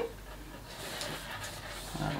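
Faint rustling and handling noise from a cardboard beauty box as its contents are reached into, over a low steady room hum.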